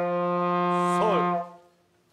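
Trombone holding one long steady practice note on sol (G), which stops about a second and a half in. The note is slightly off, and the teacher asks for the slide to be pulled in a little.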